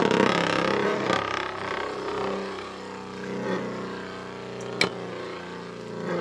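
Two Beyblade spinning tops whirring as they spin and grind against each other in the stadium, louder for the first two seconds and then settling. A single sharp clack about five seconds in.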